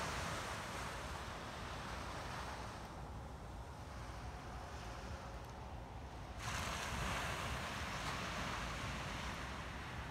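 Ocean surf washing onto a beach, a steady hiss of waves that eases for a few seconds and swells back about six seconds in, over a low rumble of wind on the microphone.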